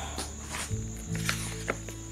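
Soft background music with held low notes that change every half second or so, with a few light clicks and paper sounds as a picture-book page is turned.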